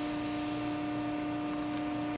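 Steady machine hum from a powered-up CNC mandrel tube bender: one strong constant low tone and a fainter higher tone over light hiss, unchanging throughout.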